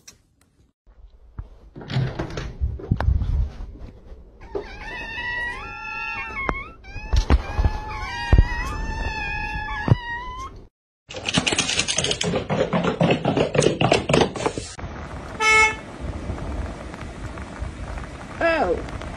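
Cats meowing repeatedly for several seconds, with a sharp knock among the calls. Before them come knocks and thumps. After them come a few seconds of rustling and clicking noise and a short beep.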